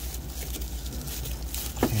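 Bubble-wrap bag rustling and crinkling as a portable radio is slid out of it by hand, with a sharp click near the end.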